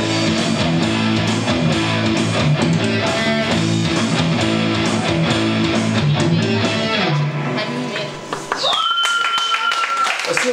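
Live rock band playing, with electric guitar over a steady low bass line, until the music winds down about eight seconds in. Near the end a high, steady squeal-like tone glides up and holds.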